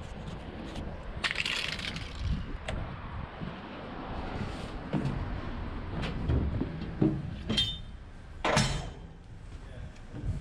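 Metallic clanks and rattles from a lorry's steel tail lift: steps on the checker-plate platform and its yellow safety gates being handled. A rattling clatter comes about a second and a half in, and the sharpest bangs, one briefly ringing, come between about seven and nine seconds in.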